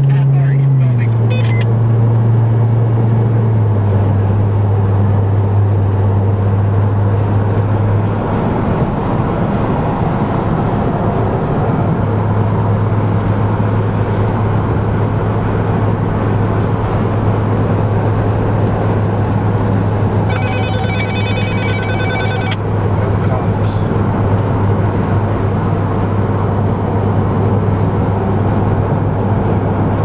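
Car engine and road noise heard inside the cabin at highway cruising speed: a steady low drone over tyre and wind noise, dropping in pitch a little twice near the start. About 20 seconds in, a short electronic ringing tone pulses for about two seconds.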